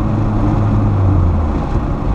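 Road and wind noise inside a moving car, with a steady low hum from a vibrating tie-down strap holding a kayak on the roof. The hum fades out about one and a half seconds in.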